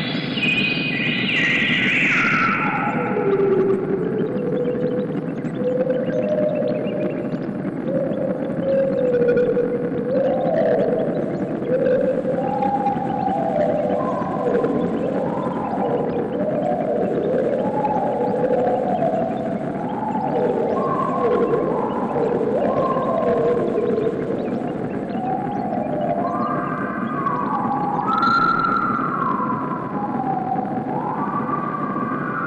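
Analog modular synthesizer music: pitched tones glide slowly up and down in overlapping slides, over a steady low rushing noise bed. In the first few seconds a cluster of high tones falls steeply, then the slides settle at a middle pitch.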